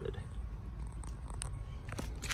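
Low, uneven rumble on a handheld microphone outdoors, with a few faint clicks and rustles.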